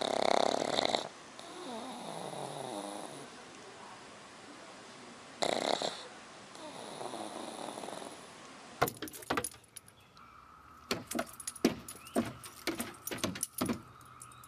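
A sleeping pug snoring: two loud snorting inhales, each followed by a softer, wheezy breath out. From about nine seconds in, irregular sharp clicks and scrapes of a dog's claws pawing at wooden deck boards.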